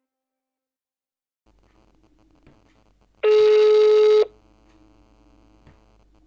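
German telephone ringback tone heard down a phone line: after faint line hum starts up, one loud steady tone about a second long sounds and cuts off, as the outgoing call rings at the other end.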